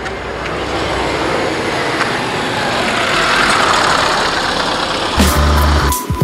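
Motor vehicle noise at a roadside bus stop: a steady rushing that grows louder over several seconds. About five seconds in, background music with a low bass line comes in.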